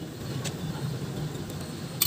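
Pot of fish soup boiling vigorously on a stove, a steady low bubbling rumble with a couple of faint clicks.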